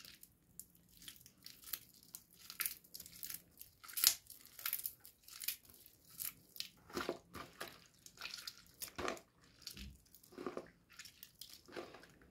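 Hands squeezing and crumbling a soaked, softened bar of soap over a bowl of soapy water: irregular wet crackling and squishing, loudest about four seconds in.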